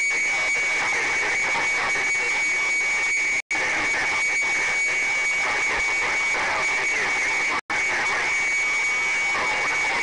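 CB radio receiving jumbled long-distance skip: loud static hiss with a steady high whistle running through it and faint garbled voices underneath. The sound cuts out completely for an instant twice, about three and a half and seven and a half seconds in.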